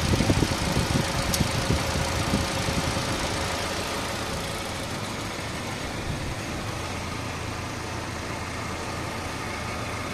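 Hyundai Kappa 1.2-litre four-cylinder engine idling steadily. Uneven low thumps in the first three seconds and a single sharp click a little over a second in.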